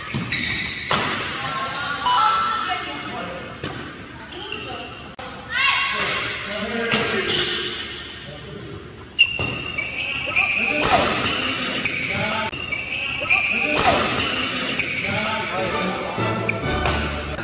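Badminton rally on an indoor court: racket strings smacking the shuttlecock again and again at an irregular pace, with sneakers squeaking on the court floor.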